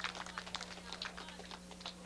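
Scattered hand claps from a small crowd of spectators, irregular and thinning out toward the end.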